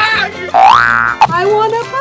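A comic sound effect: a rising whistle glide of about half a second, followed by a burst of laughter, over background music.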